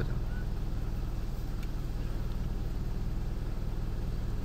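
A vehicle engine running steadily, heard as a low, even hum.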